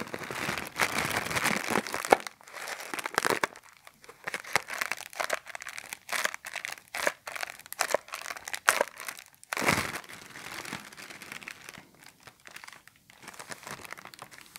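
A clear plastic bag being crinkled and squeezed between the fingers, a dense run of irregular crackles. The crinkling is heaviest in the first few seconds and again about two-thirds of the way through, and softer near the end.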